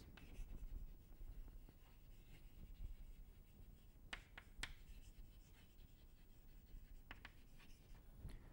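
Chalk writing on a blackboard: faint scratching strokes, with a few sharp taps of the chalk against the board near the middle and again near the end.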